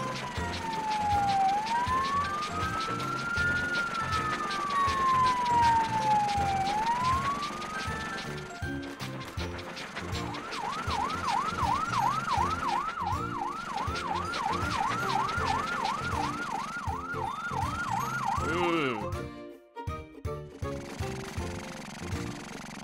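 Fire-truck siren sound effect over background music with a steady beat: a slow rising and falling wail for the first eight seconds or so, then, after a short gap, a fast yelp of about three sweeps a second that stops a few seconds before the end.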